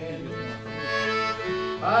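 Melodica playing a sustained reedy melody, its notes changing about every half second, over acoustic guitar.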